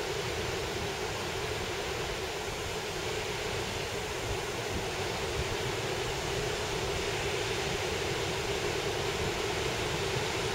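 Steady wash of surf from waves breaking along an ocean beach: an even, continuous hiss with no separate crashes standing out.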